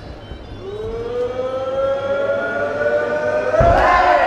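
A long, sustained tone that rises slowly in pitch and grows louder, then a heavy thump near the end as the two fighters collide in a clinch.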